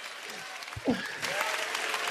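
Theatre audience applauding after a comedian's punchline, the applause swelling about a second in.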